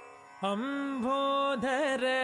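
Carnatic-style vocal singing. After a brief lull, a voice comes in about half a second in and holds a long note, then ornaments it with quick wavering turns of pitch near the end.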